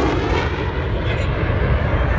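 Jet noise from a CF-18 Hornet's twin turbofan engines just after a fast low pass: the sound drops off at the start, then carries on as a steady low rumble.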